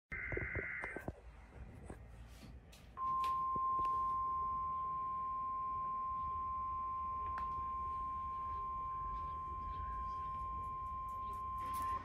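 NOAA Weather Radio weekly test: a brief burst of warbling data tones, then about two seconds later the 1050 Hz warning alarm tone, a single steady pure tone held for about nine seconds and cut off sharply at the end.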